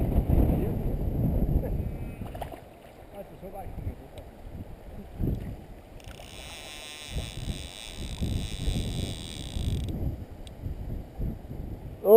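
Wind rumbling on the microphone, then a steady high-pitched buzz starting about six seconds in and stopping sharply four seconds later: a fly reel's click drag paying out line as a hooked salmon runs.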